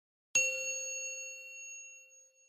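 A single bell-like ding sound effect for tapping the notification bell icon: one sharp strike about a third of a second in that rings on with a slow fade.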